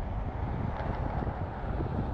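Steady road noise from a car driving at speed on a tarmac road, with wind buffeting the microphone.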